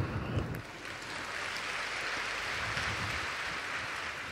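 Audience applauding, an even, steady clapping that starts about half a second in.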